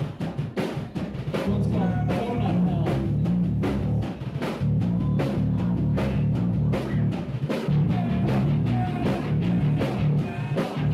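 Live heavy metal band playing a song: a drum kit beats steadily over a heavy, low riff of bass and guitar that comes in strongly about a second in.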